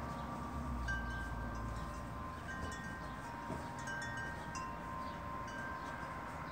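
Wind chimes ringing softly: clear single notes struck one after another every second or so, each left to ring on and overlap the next.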